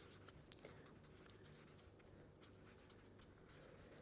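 Faint scratching of a felt-tip marker writing on paper, in quick short strokes.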